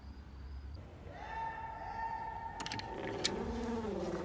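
A steady buzzing tone sets in about a second in and holds, with lower wavering tones rising and falling beneath it and two sharp clicks in the second half.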